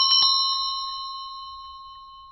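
A bell-like chime of a logo sting ringing out. A quick flutter of repeated strokes dies away in the first quarter second, then a single sustained ring fades slowly.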